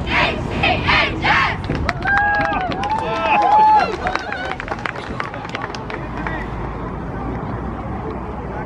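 A group of teenage girls shouting the last words of a cheer, then several voices letting out long, high, drawn-out calls, with sharp claps scattered through. After that the shouting stops and only outdoor chatter and crowd noise remain.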